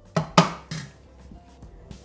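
Plastic lid of a Bimby (Thermomix TM6) mixing bowl set onto the steel bowl: three sharp knocks in the first second, the middle one loudest, as it seats on the rim.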